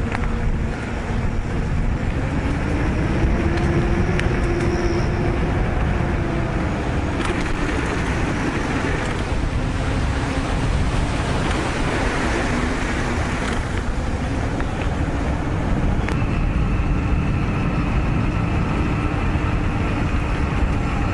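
A bicycle rolling along a paved path: a steady rush of wind on the microphone and tyre noise, with a faint whine that rises and falls early on.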